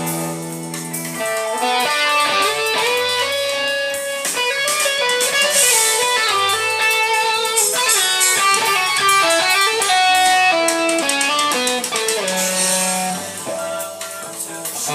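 Electric guitar playing a busy lead line of quick single notes over a band backing track with bass and cymbals.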